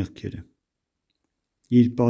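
A man's voice reading aloud in Armenian trails off with a few faint clicks, then a little over a second of dead silence, and the reading starts again near the end.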